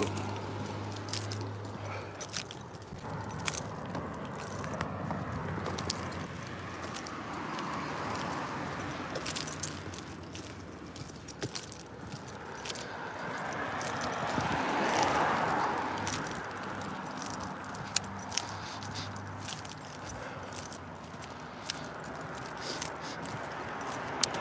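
Outdoor street sound while walking with a handheld phone: a scatter of small irregular clicks and jingles from handling and carried gear. A vehicle passes, swelling and fading about two-thirds of the way in.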